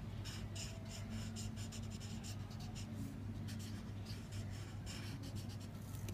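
Felt-tip marker scratching across paper in quick, short strokes as it fills in a solid black area, over a steady low hum.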